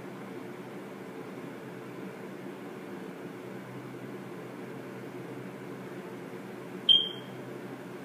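Steady low background hum, with a single short, high-pitched electronic beep near the end.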